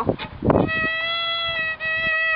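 Violin bowing one held note near the pitch of the open E string, played on the A string with the second finger after a shift to third position. The note starts about half a second in and breaks briefly for a bow change near the end.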